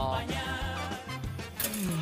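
Background music with a steady bass line, and a short sharp click about one and a half seconds in.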